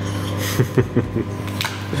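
A steady low electrical hum, with a few light knocks and clicks of something being handled about a second in and a sharp click near the end.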